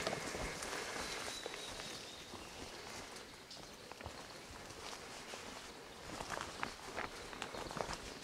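Footsteps of hikers on a slippery forest trail through dense undergrowth, with a few sharper clicks and crackles about three-quarters of the way through.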